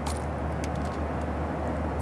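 Steady low drone of an airliner cabin in flight.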